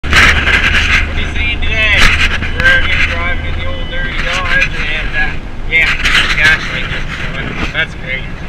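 A man's voice, unintelligible, inside a moving Dodge Ram pickup's cab over the steady low drone of the engine and road; the deepest part of the drone drops away about halfway through.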